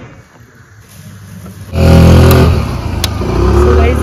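A motor vehicle engine close by, coming in suddenly and loud about two seconds in and running on to the end, with a single sharp click partway through.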